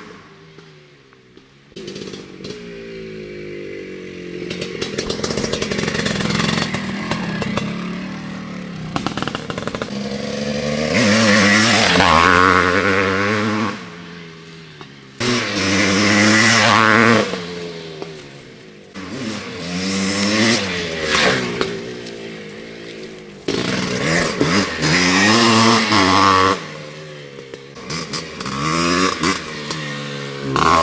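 Honda CR480 air-cooled single-cylinder two-stroke dirt bike, bored to 491 cc, ridden hard: the engine revs up and down again and again as it accelerates, shifts and backs off. It starts faint and is loudest in several passes, about a third of the way in, past the middle and near the end.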